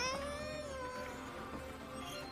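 A single long, high-pitched cry from the anime's soundtrack. It rises at the start, holds and fades after about a second and a half, over faint background music.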